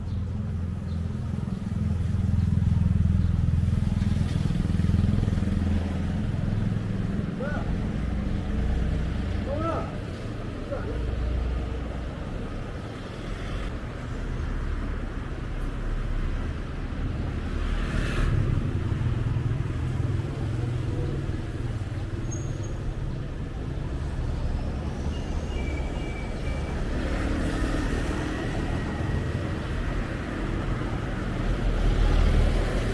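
Street traffic of cars and motorbikes passing, with low engine rumble. It swells as vehicles go by in the first few seconds and again just past the middle.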